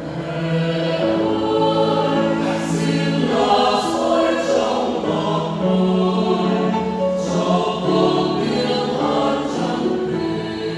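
Mixed choir of men and women singing a Vietnamese Catholic hymn together in held phrases, coming in right at the start.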